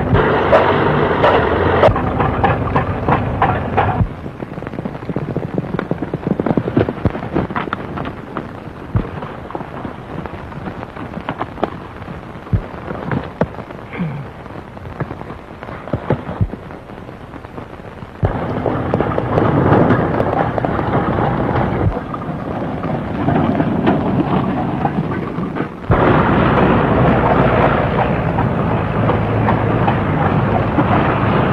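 An early open motor car's engine rattling along, heard on a worn early-1930s sound-film track with heavy crackle and hiss. The loud car noise fills about the first four seconds, drops away to mostly crackle, then comes back in loud stretches about eighteen seconds in and again from about twenty-six seconds.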